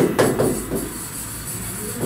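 A pause in a woman's speech: faint steady room noise, a low hum and hiss, after a brief trace of her voice at the very start.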